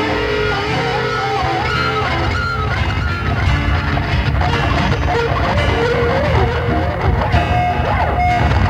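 Live rock band playing an instrumental passage: an electric guitar lead with wavering, bending notes over a steady bass and band.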